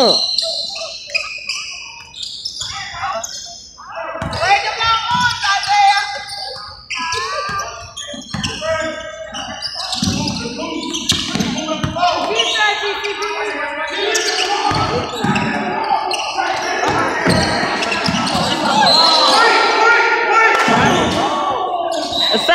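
A basketball bouncing on a hardwood gym floor at intervals during play, under steady untranscribed chatter from players and spectators echoing in the large gym.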